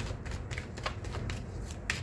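A deck of tarot cards being shuffled from hand to hand, with a run of quick, irregular card flicks and clicks and a slightly sharper one near the end.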